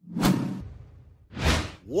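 Whoosh sound effects of an animated logo intro. One whoosh hits about a quarter second in and fades away over about a second. A second whoosh swells up and peaks about a second and a half in.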